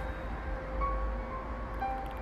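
Background music of slow, held chime-like notes, each ringing out and overlapping the next, over a steady low rumble.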